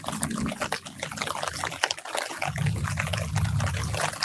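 Light rain pattering and dripping on the leaves of an orange tree, a dense run of small drop ticks. A low rumble joins in about halfway and holds to the end.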